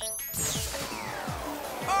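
Cartoon sound effects over background music: a short electronic blip as a button is pressed, then a long whistling sweep that falls steadily in pitch over about a second and a half.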